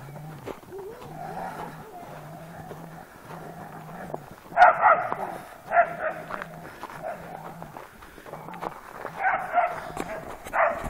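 Border collie barking: a few short barks about halfway through and again near the end.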